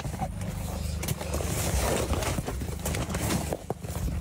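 Handling noise as a vehicle's rear door is opened and someone reaches into the cargo area: rustling, with a few short knocks around a second in and again near the end. A steady low rumble runs underneath.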